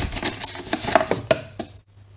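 Hand rummaging inside a cardboard box and lifting out a plastic marker pen: a quick run of light clicks and rustles of cardboard and plastic that stops shortly before the end.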